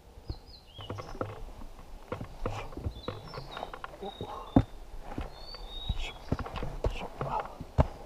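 Boots scuffing and knocking on rock and roots as hikers scramble up a steep mountain trail, with one sharp knock about halfway through. Small birds chirp and whistle in the forest through the first part.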